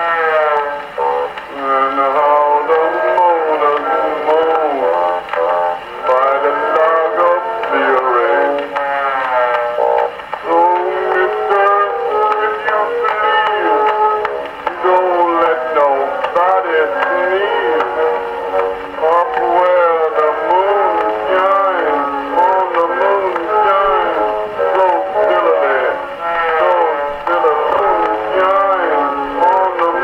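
An acoustic-era Pathé vertical-cut disc playing a popular song on an Edison disc phonograph, heard straight from the machine's horn. The sound is thin and boxy, with no deep bass and no bright treble.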